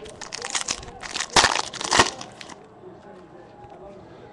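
Foil wrapper of a 2013 Bowman Chrome baseball card pack being torn open and crinkled by hand. The crinkling runs for about two and a half seconds, loudest around one and a half and two seconds in.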